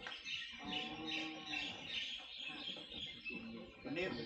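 Birds chirping repeatedly in short calls.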